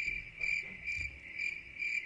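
Cricket chirping, a high chirp repeating steadily about twice a second.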